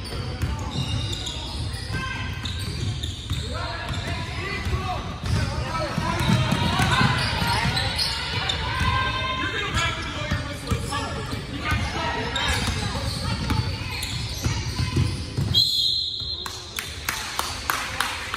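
Basketball bouncing and dribbling on a hardwood gym floor amid shouting voices, echoing in the large hall. A referee's whistle sounds once for about a second, about three-quarters of the way through.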